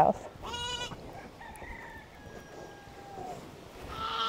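Farm animals calling: one short, clear call about half a second in, then fainter, drawn-out calls from farther off.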